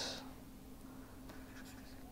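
Faint scratching and ticking of a stylus writing on a pen tablet, over a low steady hum.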